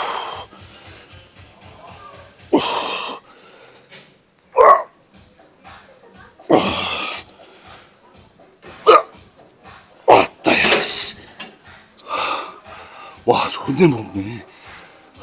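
A man straining through reps on a decline chest press machine, with forceful exhalations and short grunts about every one and a half to two seconds, one with each push against a heavy load. Gym background music with a steady beat plays underneath.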